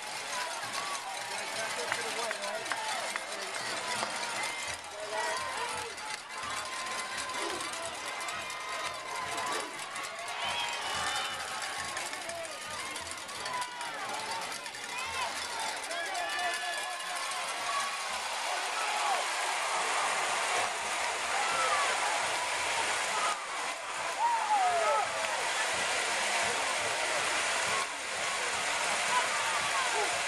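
Stadium crowd cheering, with many overlapping voices, shouts and whoops, as a football team runs out onto the field. The cheering grows louder in the second half.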